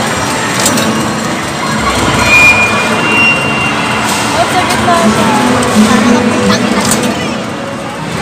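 Busy amusement-arcade din: a steady wash of background voices and game-machine noise, with two short electronic beeps about two and three seconds in.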